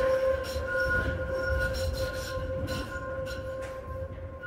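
Konstal 803N tram running, heard from inside the passenger saloon: a low rumble of wheels on rail under steady, high-pitched squealing tones, growing quieter toward the end.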